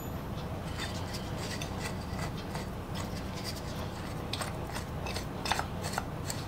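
Faint metal scraping and light clicks as the small iron hardware of a two-man saw handle is unscrewed and handled, over a steady low hum, with a slightly louder click near the end.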